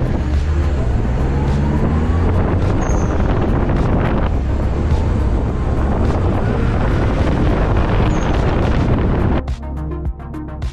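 Wind buffeting the microphone of a camera on the outside of a moving car, over a low road and engine rumble, with music underneath. Near the end the wind noise cuts out, leaving electronic music with a steady beat.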